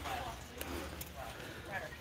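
Warehouse-store background: faint chatter of other shoppers, with a light clatter from a shopping cart being pushed along a concrete aisle.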